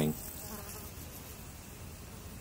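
Faint, steady insect buzzing in the background.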